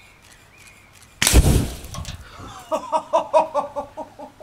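An exploding target, hit by an air-rifle pellet, goes off about a second in: one sudden, loud blast with a deep boom that dies away within half a second.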